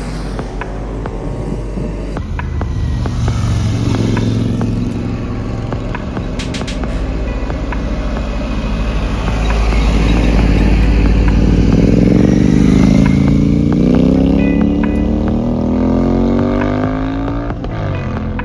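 Traffic passing close on a mountain road: a car, then a heavy truck, loudest about ten to thirteen seconds in. Behind it a motorcycle engine accelerates, its pitch rising steadily until just before the end.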